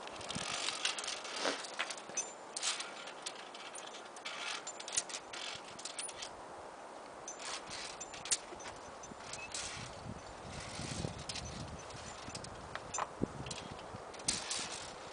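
Irregular sharp clicks, clinks and scuffs of via ferrata climbing: metal gear knocking on the steel cable and boots scraping on rock, close to the microphone, with a low rumble of handling or wind a little past the middle.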